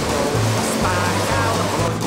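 Background music with a steady bass line over the rush of white water pouring down a weir's boat chute; the water noise cuts off abruptly near the end while the music continues.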